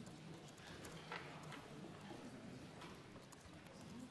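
Near silence: the quiet room tone of a large debating chamber, with faint low murmuring voices and a few small clicks and knocks about a second in.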